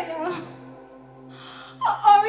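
A woman's voice through a stage microphone over soft, sustained backing music. Her voice trails off in a falling tone at the start, she draws a sharp gasping breath about a second and a half in, and she starts speaking again just before the end.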